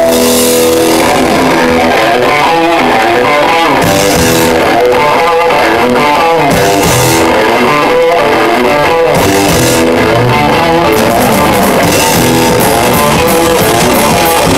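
Live rock band playing loud: electric guitar over bass guitar and drum kit, with a held note dying away just after the start.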